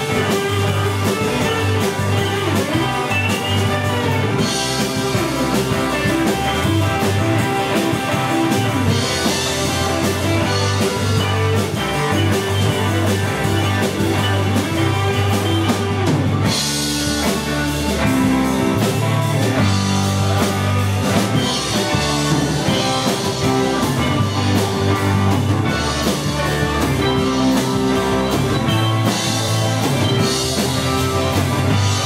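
Live rock band playing: electric guitars, bass and drum kit with cymbals, loud and steady, changing into a new section about halfway through.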